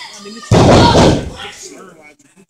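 A wrestler slammed onto the wrestling ring's mat: one sudden, loud thud of the ring floor about half a second in, dying away within a second.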